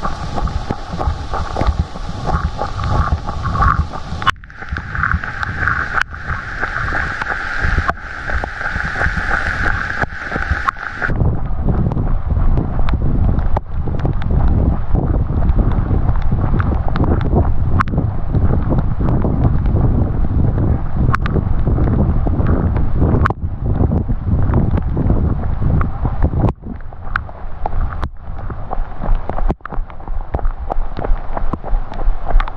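Wind buffeting the microphone of a camera carried by a runner in heavy rain, a rough low rumble, with raindrops hitting the camera as scattered sharp ticks. A brighter hiss drops away about eleven seconds in.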